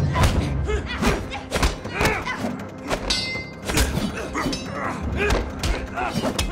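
Fight-scene soundtrack from a TV drama: a rapid run of punch and body impacts, thuds several a second, with short grunts and a brief high ring about three seconds in, over music.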